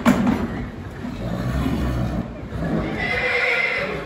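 A horse whinnying, the call coming in the last second or so.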